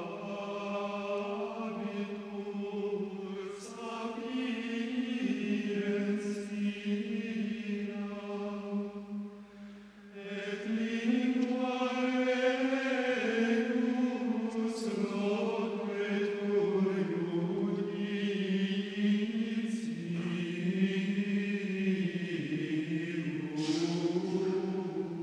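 Slow sung chant: voices hold long notes, moving to a new pitch every few seconds, with a short breath pause about ten seconds in.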